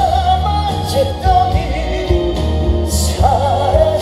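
Male trot singer singing live into a handheld microphone over a backing track with bass and drums, his held notes wavering with vibrato.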